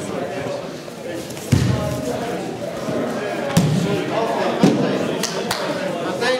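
Heavy thuds of bodies hitting the training mats as partners are thrown or taken down: one about a second and a half in, then two more in the second half, over the chatter of a large hall.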